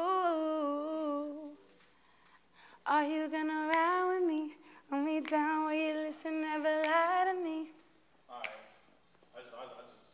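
A woman singing unaccompanied, a few long sung phrases with held, wavering notes and short pauses between them. A brief, softer voice sound comes near the end.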